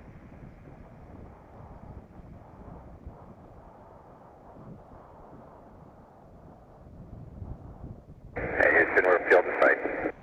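A faint, steady rushing hiss, then, about eight seconds in, a loud burst of thin, telephone-like radio voice traffic with a few clicks, as heard on a spacecraft air-to-ground radio loop.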